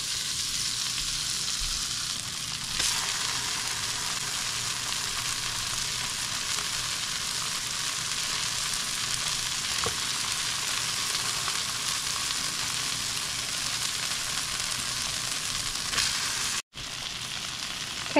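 Ground-beef Salisbury steak patties sizzling in butter in a hot skillet as they sear: a steady frying hiss that grows a little louder about three seconds in. It breaks off for an instant near the end.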